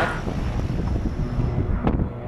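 Twin-engine turboprop airplane taking off, its engines and propellers at full power making a steady rushing drone. A sharp click sounds near the end.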